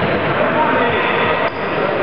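Indistinct babble of many players' and spectators' voices during an indoor futsal game, with the ball thudding against the wooden sports-hall floor.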